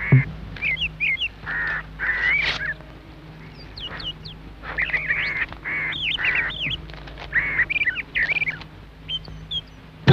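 Ducks quacking in short repeated calls, several in quick clusters, with small birds chirping higher above them.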